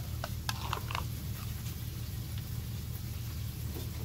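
Foil seal being peeled off a Pringles can: a few short crinkles and tears in the first second, then a steady low hum.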